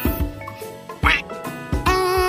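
Children's song backing music with a steady beat, with a single short duck quack sound effect about a second in, standing in for a letter of the alphabet. A sung note begins near the end.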